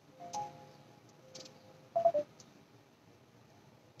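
A metal singing bowl knocked once, giving a faint two-tone ring that fades over about a second and a half, then a second, shorter knock about two seconds in as it is handled.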